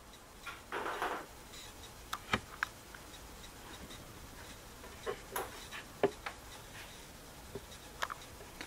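Light clicks and knocks from a metal baking tray of dough being handled, set on a counter beside a dough proofer, with a short rustle about a second in.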